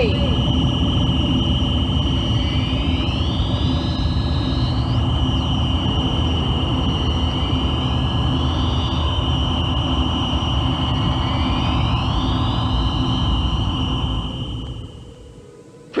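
Electronic science-fiction sound effect: a steady high tone with a few slow rising-and-falling sweeps over a loud low rumble, fading out shortly before the end.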